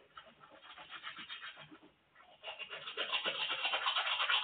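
Teeth being brushed with a toothbrush: rapid back-and-forth scrubbing strokes, soft at first and much louder from about two and a half seconds in.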